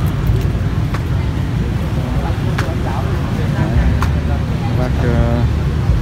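Busy street-market ambience: a steady low rumble of nearby traffic with scattered background voices and a few sharp clicks.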